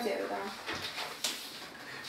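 Chalk writing on a blackboard: faint strokes and a couple of short taps about halfway through.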